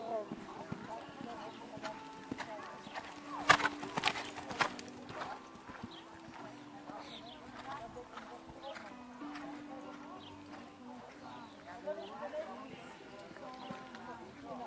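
Hoofbeats of a show-jumping horse cantering and jumping a course on a sand arena, with a burst of sharp knocks about three and a half to five seconds in, the loudest part. Faint voices and faint background music underneath.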